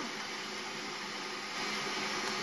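Kitchen robot (electric food processor) running steadily, beating eggs and sugar until pale, with a steady motor hum.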